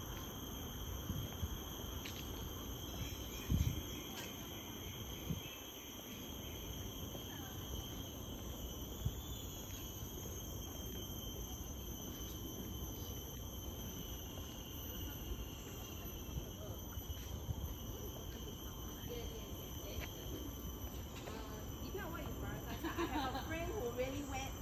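Steady high-pitched insect chorus of tropical forest, several constant pitches layered together, over a low rumble, with a few soft thumps early on.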